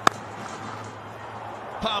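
A single sharp crack of a cricket bat striking the ball, driven through extra cover, over a steady background hum.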